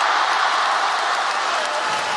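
Arena crowd and team bench applauding steadily after a point is won in a table tennis match.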